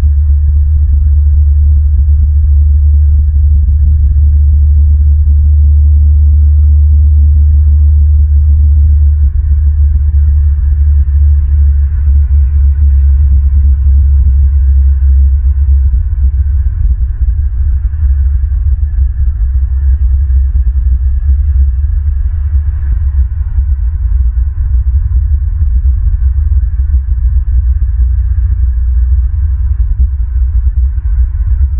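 Wind rumbling on an outdoor camera microphone: a loud, deep, steady rumble that turns gustier and more uneven about a third of the way in.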